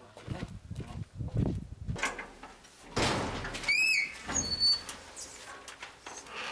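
Footsteps on a stone and gravel path, then a metal mesh gate being pulled open, its hinge giving a short high squeak a little before the four-second mark.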